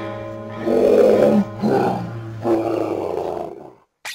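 Three loud, rough roars, one after another, over steady background music; the sound cuts out abruptly just before the end.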